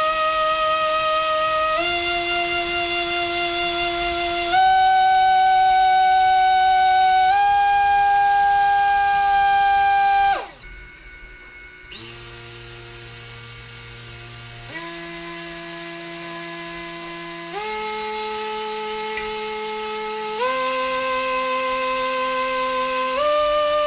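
Brushless 2800KV drone motor spinning a Gemfan 4024 propeller on a thrust stand, its whine stepping up in pitch every couple of seconds as the throttle is raised in increments. About ten seconds in it winds down quickly, then starts again low and quieter and climbs step by step.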